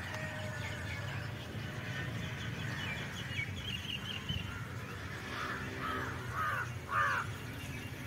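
Crows cawing, about four harsh calls in the second half, the last the loudest. A smaller bird chirps in a quick run of high notes a few seconds earlier, over a steady low rumble.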